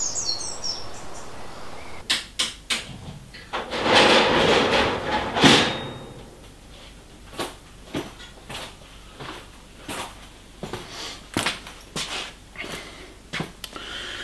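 A string of sharp knocks and clunks, with a longer noisy rush about four to five seconds in. A few bird chirps are heard at the very start.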